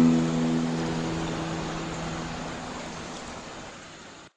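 The last chord of an acoustic guitar rings out and dies away about two seconds in, over the steady rush of a waterfall. The whole sound fades steadily.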